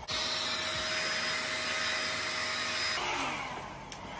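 Mini handheld hair dryer switched on, running steadily with a rush of air and a thin motor whine, then switched off about three seconds in and winding down.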